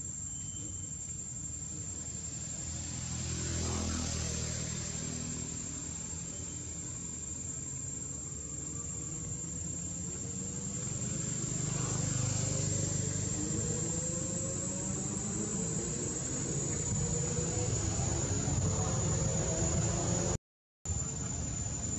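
Low rumble of motor vehicles passing, swelling about four seconds in and again around twelve seconds, with an engine's pitch sliding up and down near the end, over a steady high insect drone.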